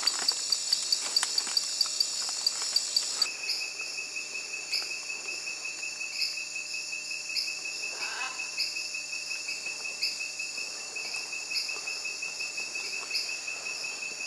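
Tropical forest insects calling: a rapid, high pulsed chirping, which changes abruptly about three seconds in to a different chorus. The new chorus has a fast, steady trill and a higher chirp repeating a little more than once a second.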